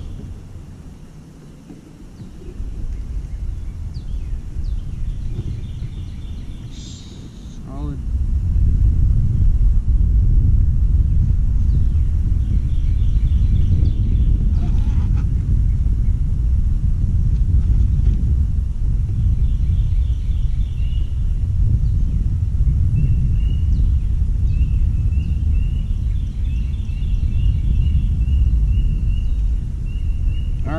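Wind buffeting the microphone: a loud low rumble from about eight seconds in, with a bird faintly singing short runs of repeated high notes behind it.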